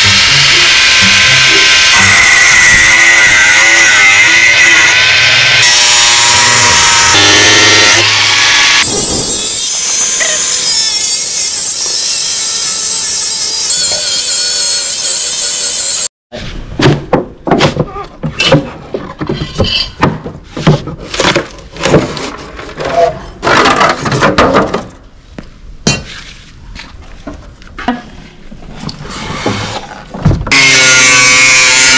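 Cordless angle grinder cutting through a scrap refrigerator's sheet-metal cabinet: a loud continuous grinding whose pitch wavers as it bites, lasting about sixteen seconds. After an abrupt break it gives way to a run of irregular sharp knocks and clatters.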